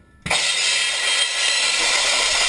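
Drum kit: a drum and cymbals struck together about a quarter second in, the cymbals then ringing on in a loud, steady, bright wash.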